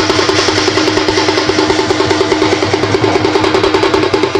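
Folk drum ensemble playing a fast, unbroken rhythm, about ten strokes a second. It is a large barrel drum (dhol) played by hand, small drums beaten with sticks, and brass hand cymbals clashing along.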